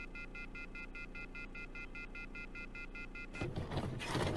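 Rapid electronic beeping: three high tones pulsing together at an even rate of several beeps a second, stopping about three and a half seconds in. A short burst of noise follows near the end.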